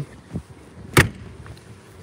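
A single sharp knock about halfway through, with a fainter tap before it.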